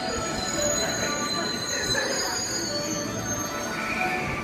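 A JR West electric train running alongside the platform. Its wheels squeal in thin, steady high tones over the noise of the cars going by.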